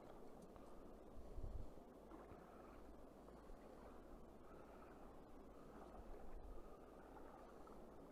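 Faint, steady rush of a flowing river, with a brief low rumble about one and a half seconds in.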